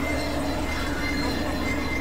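Experimental synthesizer drone: a steady low hum under held tones and a dense hissing wash of noise, with faint squealing glides.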